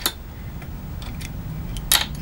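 Small metal parts handled on a workbench: a steel socket coming off a pocket tool's bit, with a couple of faint ticks and one sharp metallic click near the end.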